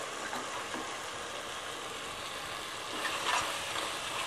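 Tomato masala sizzling in a pressure-cooker pot, with a steady hiss throughout. A steel spoon stirs and scrapes through it, more audibly about three seconds in.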